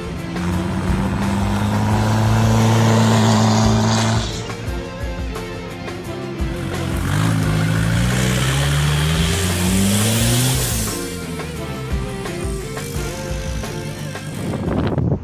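A turbo-diesel Jeep Wrangler's engine revving under music. Its note holds steady for the first few seconds, then climbs in pitch from about seven seconds in as the Jeep accelerates.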